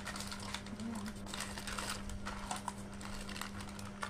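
Plastic strips of laundry-soap sachets rustling and crinkling in quick irregular clicks as they are handled and unfolded. A steady low hum runs underneath.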